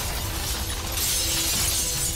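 Disaster-film sound effects of a building collapsing: debris and glass crashing and shattering over a continuous low rumble, with faint music underneath.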